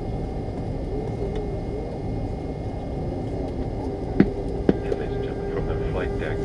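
Cabin noise of a McDonnell Douglas MD-88 taxiing: a steady low rumble from its rear-mounted Pratt & Whitney JT8D engines at idle and the cabin air. A steady hum joins about halfway, and two sharp clicks come near the end.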